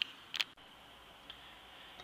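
Quiet room tone with two short clicks, one right at the start and a second about half a second in.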